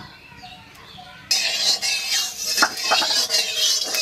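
Spatula stirring and scraping mustard oil around an aluminium kadai. From about a second in, a loud steady hiss runs under the scrapes.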